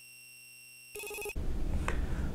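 Tail of an electronic logo sting: faint steady tones, then a short electronic chime about a second in. It gives way to a low background hum with a single click near the end.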